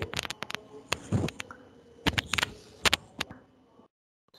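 A series of sharp, irregular clicks and taps in small clusters, with a short low vocal sound about a second in.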